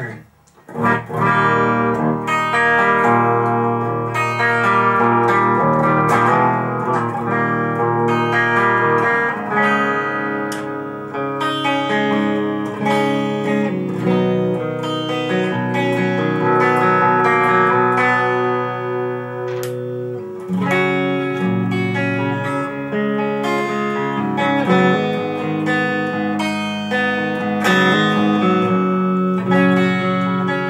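Electric guitar, an Edwards Les Paul Custom with Seymour Duncan humbuckers, played through an Engl Screamer 50 tube combo amp with only the amp's own reverb, in a continuous passage of chords and notes. There is a brief pause just after the start.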